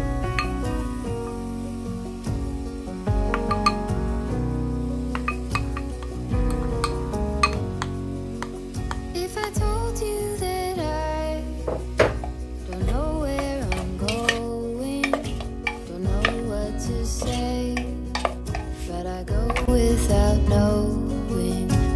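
A wooden spoon scraping and knocking against a stainless steel pot as diced onion, tomato and pepper are tipped onto raw beef chunks and stirred, with many short clinks, under background music.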